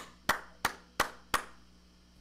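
Hand claps welcoming a performer: five slow, evenly spaced claps, about three a second, stopping about a second and a half in.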